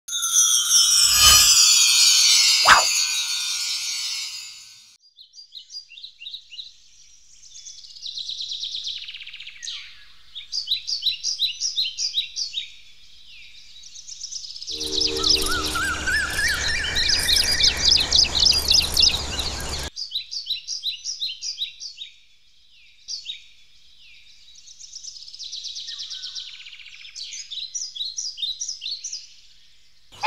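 Birds chirping in quick, repeated high trills, with a denser, noisier burst of calls about halfway through. The first four seconds hold a loud falling sweep instead.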